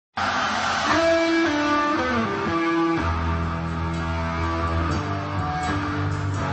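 Electric guitar played live, opening with single sustained lead notes and bent notes, with a full rock band and bass coming in about three seconds in.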